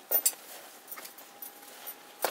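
Metal bangle bracelets clinking against each other as hands rummage in a cardboard box, a few sharp clinks at the start, then fainter scattered ones.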